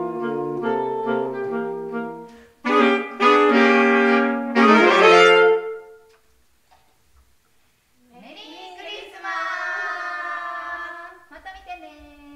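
Saxophone trio playing the closing bars of a tune, ending on loud held chords about halfway through. After a short silence, a drawn-out cheer from the players' voices, starting with an upward slide.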